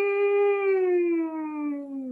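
A woman humming a single sustained 'mm' note with closed lips as a vocal warm-up; the pitch holds, then slides slowly downward.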